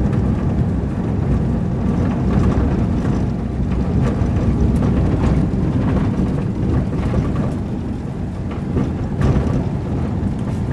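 Steady low rumble of a moving minibus heard from inside its cabin: engine and road noise, with a few faint knocks.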